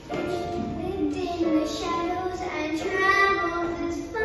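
A child singing a slow song with long held notes over instrumental accompaniment.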